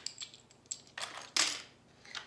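Loose plastic LEGO bricks clicking and clattering as they are picked through and sorted by hand, a handful of separate clicks with the loudest about a second and a half in.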